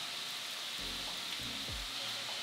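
Steady sizzling hiss of food frying in a pan, with a couple of faint low thuds.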